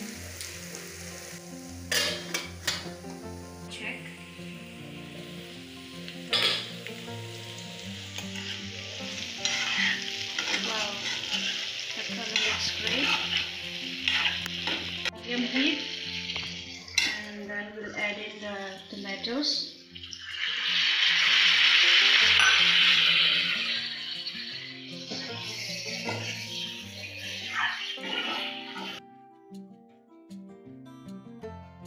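Pumpkin and potato pieces sizzling in hot oil and spices in a wok, with a metal spatula stirring and scraping against the pan in repeated clicks and scrapes. About two-thirds through, the sizzling swells loudly for a few seconds as chopped tomatoes go into the pan.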